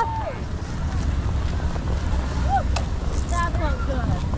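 Wind buffeting the microphone, a steady low rumble, with brief snatches of people's voices about two and a half and three and a half seconds in.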